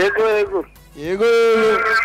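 A man singing into a close microphone: two long drawn-out notes, the second starting about a second in after a short pause.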